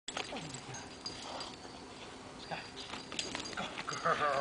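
An American bulldog panting and snuffling as it tugs at a toy, with scattered light knocks and rustles from paws and feet moving on leaf-strewn grass.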